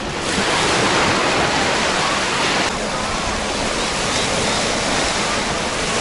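Small sea waves breaking and washing up the shore of a sandy beach, a steady rush of surf that drops slightly in level about two and a half seconds in.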